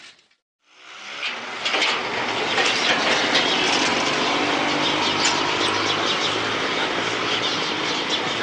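Outdoor street ambience: after a brief silence near the start, a steady wash of background noise with a low hum and many short, high chirps.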